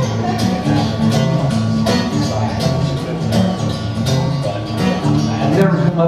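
Acoustic guitar strummed in a steady rhythm, an instrumental passage of a live solo song.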